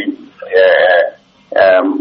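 A man's voice: a word ends, then comes a single drawn-out, wavering vocal sound of about half a second, like a hesitation sound or a burp. After a short pause, speech resumes near the end.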